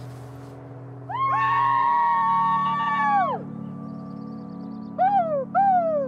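A man and a woman give a long, high cry together, held for about two seconds before it falls away, then two short falling whoops near the end. Soft background music with a steady low drone runs underneath.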